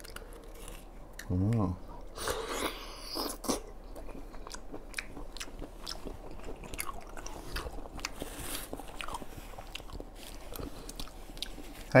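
Close-miked chewing and mouth sounds of a man eating abalone, with many small clicks scattered throughout and a denser burst of chewing a couple of seconds in.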